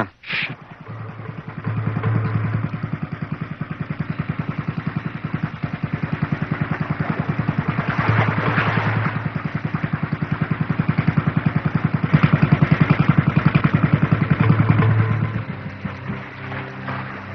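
A short, sharp sound right at the start, then an engine running with a rapid, even pulse that swells louder and eases off a few times.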